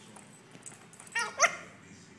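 Boston Terrier puppy giving two short, high-pitched yips during rough play, the second louder, about a second in.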